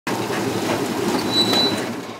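Engine of a Soviet ZIL-130 dump truck running with a steady rumble. A brief high thin squeal comes in about a second and a half in.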